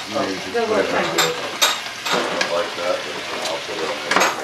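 Food sizzling while it is stir-fried in a pan, with a few sharp clicks of a utensil.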